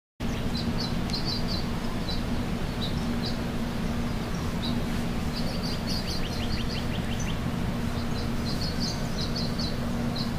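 Birds chirping in short, repeated high calls, with a quick run of falling notes about six seconds in, over a steady low hum and a constant low rumble of outdoor noise.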